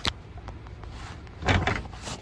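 Plastic-coated reach tool working against a Hyundai Elantra's interior door handle through the door frame, with a faint click at the start and a short clunk about one and a half seconds in as the handle is flipped back to unlock the door.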